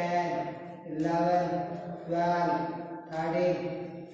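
A man's voice calling out exercise counts in long, drawn-out, chant-like syllables, about one count a second, four in all.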